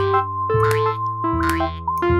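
Cartoon background music of held, evenly pitched notes, with a short springy cartoon sound effect repeating about every two-thirds of a second.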